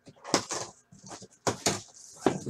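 A few sharp knocks with scraping and rustling between them, from a case of boxes being handled and shifted on the floor.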